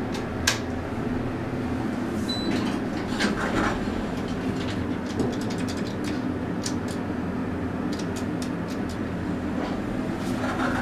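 Dover traction elevator, modernized by KONE, heard from inside the car: a steady low hum throughout. There is a click as a floor button is pressed, a short high beep a little after two seconds, and scattered clicks and rattles as the car arrives and the doors open.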